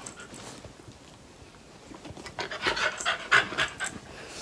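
Dog panting: quiet at first, then a quick run of short breaths in the second half.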